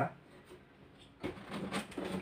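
Large cardboard doll box being handled: a few short scrapes and knocks of the carton in the second half, after a quiet start.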